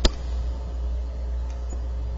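A single sharp mouse click just after the start, then a steady low hum from the recording setup.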